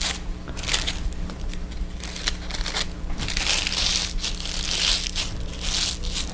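Thin, delicate paper crinkling in irregular bursts as the petals of a paper flower are lifted and pressed into shape by hand.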